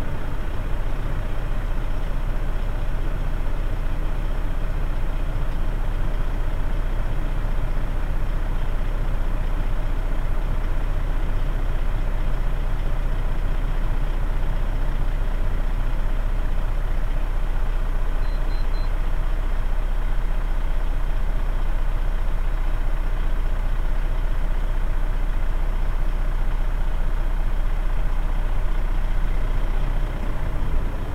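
Road train truck's diesel engine idling steadily, a deep rumble heard from inside the cab.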